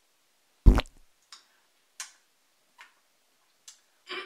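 A single sharp thump just under a second in, followed by four faint clicks spaced somewhat under a second apart.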